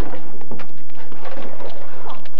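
Skateboard scraping and clattering on a wooden box ledge, with a run of knocks and thuds as the skater bails onto the asphalt near the end.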